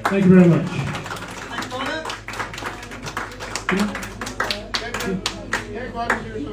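A small audience clapping for a while as a song ends, with voices calling out among the claps.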